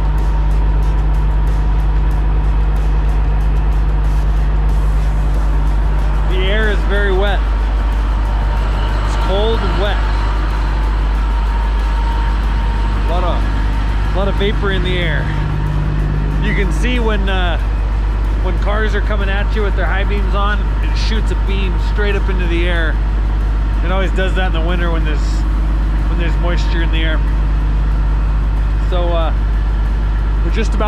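A diesel semi-truck engine idling with a steady low rumble, close by, while a man talks over it.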